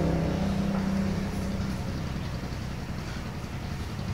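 A low, steady motor hum with a few level tones, like an engine. It fades over the first couple of seconds and leaves a quieter rumble.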